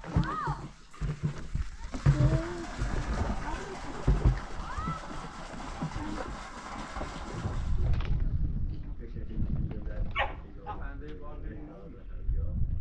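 Water pouring from a plastic container into a large plastic water tank, a steady splashing rush that stops abruptly about eight seconds in.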